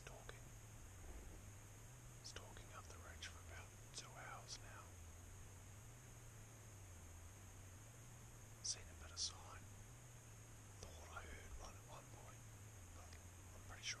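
A man whispering faintly over a quiet background. About nine seconds in come two short, sharp sounds about half a second apart, the loudest things heard.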